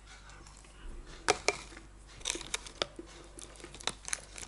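Metal fork clicking and scraping in a plastic microwave-meal tray as mashed pie filling is scooped: a few sharp, scattered clicks, busiest in the middle.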